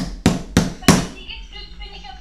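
Four sharp knocks in quick succession within the first second, each with a short ring, followed by faint voices.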